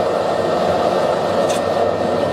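Propane forge running with forced air from its electric blower: a steady rushing noise of blown air and gas flame, with no change through the moment.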